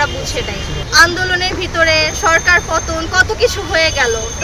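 Speech: a young woman talking in Bengali, with a steady low background rumble.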